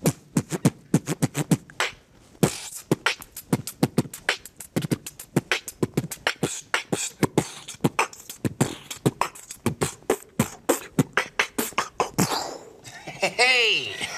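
Human beatboxing: a fast, dense run of kick, snare and hi-hat mouth sounds that stops about twelve seconds in, followed by a brief wavering pitched voice sound.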